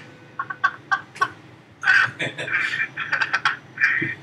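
Laughter heard over a telephone line, in short rapid bursts that grow into a longer run of laughing about halfway through.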